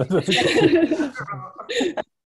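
A man chuckling, short breathy laughs mixed with a few spoken sounds, over a video-call connection.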